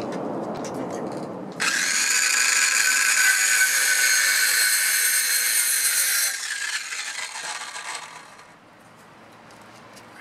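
Cordless circular saw cutting a notch into a two-by-four: the motor starts suddenly with a high steady whine for about five seconds, then the blade spins down and fades out.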